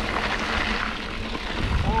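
Wind buffeting the action camera's microphone over the crunch and rattle of mountain bike tyres rolling on a loose gravel dirt road.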